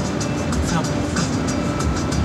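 Car cabin road noise from a moving car, with music playing on the car radio and people talking over it.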